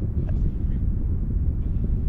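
Space Shuttle Atlantis climbing under its solid rocket boosters and main engines: a steady, deep rumble.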